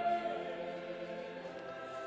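Choral music holding a long sustained chord that slowly fades away.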